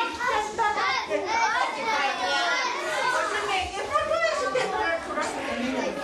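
A crowd of young children's voices calling out and chattering over one another, in a hall.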